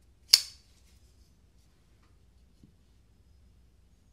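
A single sharp metallic click from a Spyderco Shaman folding knife being handled, then near silence.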